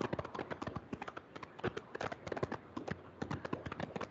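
A quick, irregular run of light clicks and taps, many a second.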